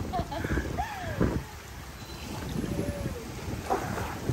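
Hot tub water churning and bubbling from the jets, with water being splashed by hand.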